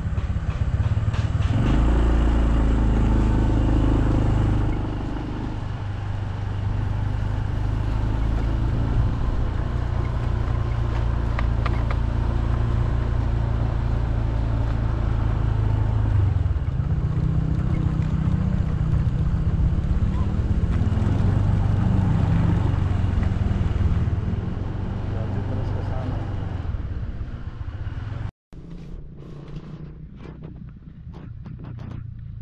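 Small motorcycle engine running steadily while ridden along a rough dirt track, its low note rising and falling with the throttle, over a rumble of wind on the microphone. The sound cuts out for a moment near the end and comes back quieter.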